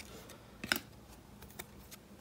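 Football trading cards being handled and slid from the front of a stack to the back: a few faint flicks and ticks of card stock, the sharpest about two-thirds of a second in.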